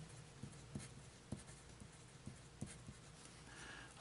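A pencil writing a word on a paper sheet: faint scratching with a dozen or so light ticks as the strokes are made.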